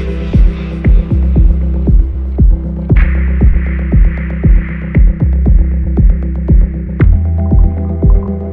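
Progressive house music from a DJ mix: a steady four-on-the-floor kick drum, about two beats a second, over a deep bassline, with the treble filtered away so the track sounds muffled. A filtered noise swell comes in about three seconds in, and the fuller sound starts to return near the end.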